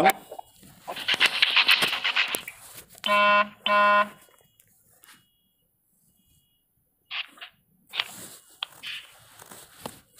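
A second or so of crackly, garbled noise over the phone line, then two identical short buzzy electronic beeps about half a second apart from the phone. After them the line goes nearly silent, with a few faint clicks and rustles near the end.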